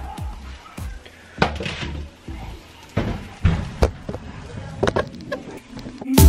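Kitchen clatter: a series of separate knocks and clunks, about half a dozen spread out, as a foil-lined baking pan of wings is taken from the oven and set down on the glass stovetop.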